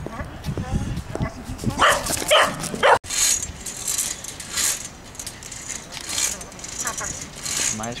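A dog barking: three short, loud barks about two seconds in.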